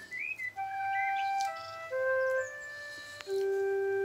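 A short, simple tune of plain held notes stepping up and down, ending on a long low held note, with a brief upward chirp near the start. It is heard through a TV speaker.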